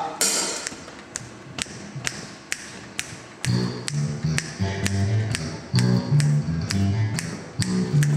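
Drumsticks ticking a steady light pulse on the drum kit, about two or three sharp ticks a second, keeping time. About three and a half seconds in, a bass joins with a repeating low line.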